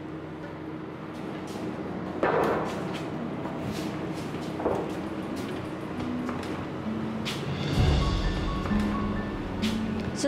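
Background drama score of sustained tones with a few slow stepping notes. Scattered knocks and clicks run through it, and the loudest is a low thud about eight seconds in.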